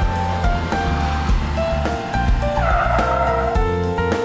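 Background music with a steady beat, over which a car's tyres squeal for about a second near the end as it pulls in.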